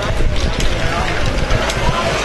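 A LEGO great ball contraption running: small plastic balls clattering and the modules' mechanisms clicking, over a steady low rumble and background chatter.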